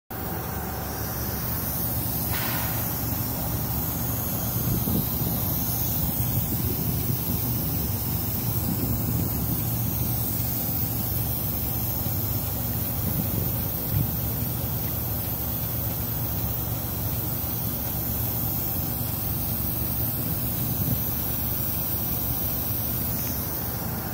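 Truck engine idling steadily, with a constant hiss of escaping air from an air leak in the engine compartment.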